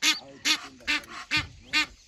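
A mother duck quacking repeatedly, about five short calls in two seconds. It is calling its ducklings away from a stalking lioness.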